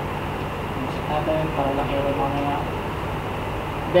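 Steady room hum and noise, with a faint voice speaking briefly from about one to two and a half seconds in.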